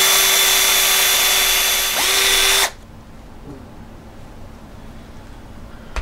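Power drill spinning an 11/64 bit into an AR-15 barrel's steel through a dimple jig, cutting a shallow set-screw dimple for a low-profile gas block. It runs loud and steady with a high whine, eases briefly about two seconds in, and stops abruptly just under three seconds in.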